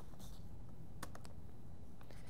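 Quiet room tone with steady background hiss and a few faint clicks, a small cluster of them about a second in.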